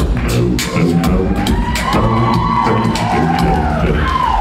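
A cappella bass voice singing a deep, low line over mouth-made vocal percussion beats, with a long held higher note entering about two seconds in.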